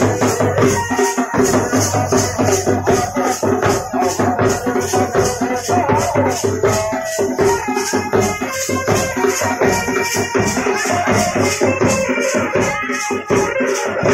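A Nepali band baja wedding band playing dance music: a side drum beaten with sticks under a steady, rapid, rattling high beat, with a melody over it.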